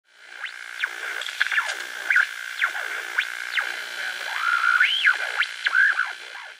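Short electronic intro sting: synthesizer with rapid swooping pitch glides rising and falling over a steady high tone, fading in at the start.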